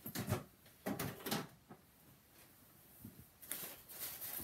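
Paper and plastic sheets rustling as they are handled, in three short bursts: just after the start, about a second in, and near the end.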